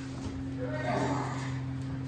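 A man's brief wordless vocal sound about a second in, over a steady low hum.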